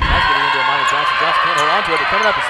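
A voice talking over the steady background noise of a basketball arena, with a few faint sharp ticks.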